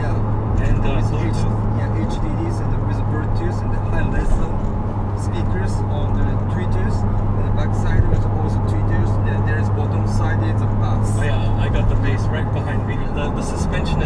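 Nissan Skyline GT-R R34's RB26DETT twin-turbo straight-six heard from inside the cabin, a steady low drone at cruise with road noise; the engine note drops lower about a second before the end.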